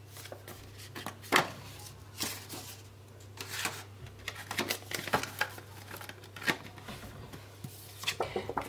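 Rustling and crinkling of a clear plastic cash envelope and banknotes being handled and slid in and out of a ring binder, in short scattered rustles, the loudest about a second and a half in.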